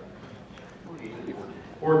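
Quiet room tone of a large hall during a pause in a man's speech through a microphone, with faint murmuring. He starts speaking again near the end.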